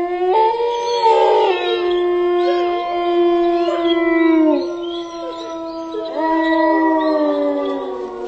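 Several canines howling together in long, overlapping held howls that begin suddenly. The howls slide down and ease off midway, then start up again strongly about six seconds in.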